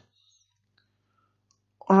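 Near silence: a faint low hum and a few faint, scattered clicks, then a man's voice starts speaking near the end.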